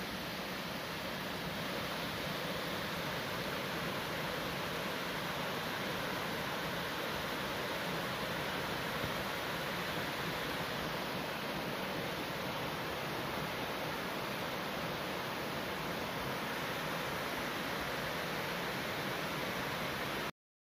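Virginia Hawkins Falls, a multi-tiered waterfall, cascading over rock ledges with a steady, unbroken rush of falling water.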